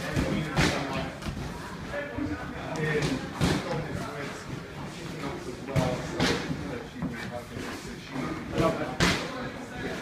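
Boxing gloves landing punches during sparring: irregular thuds, about half a dozen across the stretch, mixed with scuffing footwork, over indistinct voices in a large gym.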